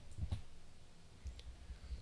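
A few faint clicks over a low steady hum.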